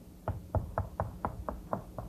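Chalk tapping on a blackboard as capital letters are written: a quick run of short, sharp knocks, about four a second.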